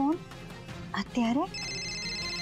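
Mobile phone ringtone for an incoming call: a steady high electronic ring that comes back in near the end, after a short spoken word.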